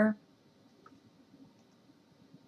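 A spoken word trails off at the very start, then near silence: faint room tone with a couple of faint clicks.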